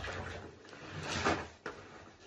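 Wet, soapy sponges squeezed by hand under foam in a bathtub, giving a squelching rush of water and bubbles that swells about halfway through, with a short sharp squish just after.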